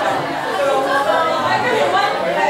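Many people talking at once: the steady, overlapping chatter of a mingling crowd, with no single voice standing out.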